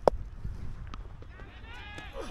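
A single sharp knock of a cricket bat striking the ball right at the start, followed by a faint, wavering distant call near the end.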